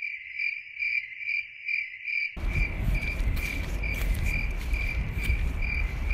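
Cricket chirping: a steady high-pitched trill pulsing a little over twice a second. About two seconds in, a low rumbling noise joins it.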